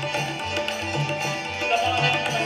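Instrumental passage of Indo-Caribbean devotional music: a harmonium holds and moves between reedy chords and melody notes over a steady hand-drum beat.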